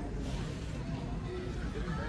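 Shop ambience: indistinct background voices and in-store music over a steady low rumble.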